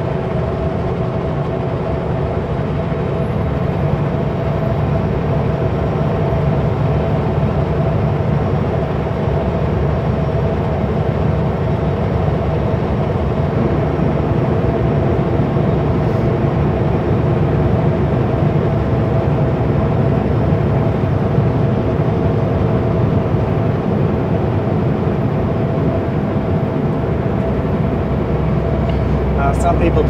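Kenworth W900L semi truck running steadily down the highway: constant engine drone and road rumble with a steady hum.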